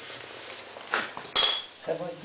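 Two sharp metal-on-metal clinks about half a second apart, the second ringing briefly: tools or parts knocking against the engine's metalwork during assembly.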